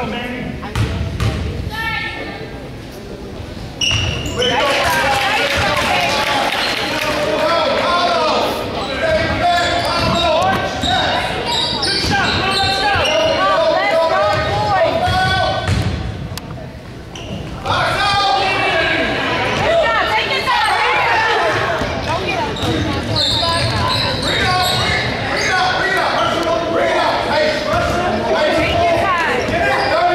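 A basketball bouncing on a hardwood gym floor a few times. Then, from about four seconds in, loud overlapping shouting voices from players and spectators during play, echoing in the large gym, easing briefly past the midpoint.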